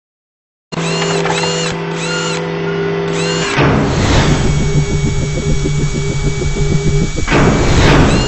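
Sound effects for an animated logo intro: a steady mechanical whirring hum with short chirps about twice a second, a whoosh, then a fast mechanical rhythm and a second whoosh.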